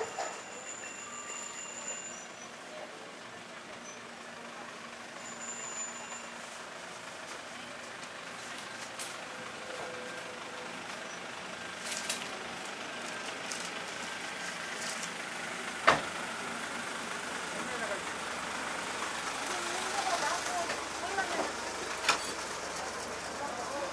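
Outdoor market street ambience with distant voices and vehicle noise. A steady high electronic tone sounds near the start and again about six seconds in, and there is a single sharp knock about 16 seconds in.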